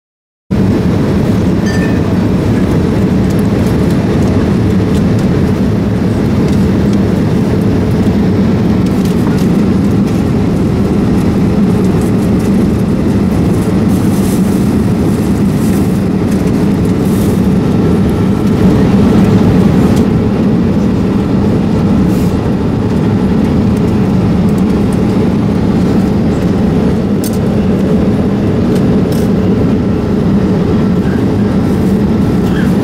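Steady drone of a Boeing 787 airliner cabin in cruise, the low rush of engines and airflow. It comes in suddenly about half a second in and holds level, with a few faint clicks over it.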